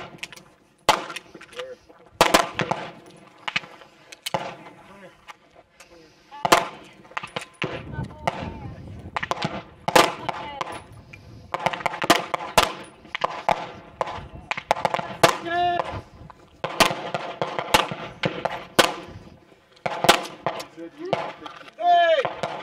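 Gunfire from several shooters at a firing line: many sharp single shots at irregular intervals, sometimes in quick clusters and overlapping between lanes.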